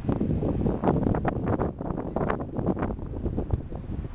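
Wind buffeting the microphone in irregular gusts, a rough rumbling noise.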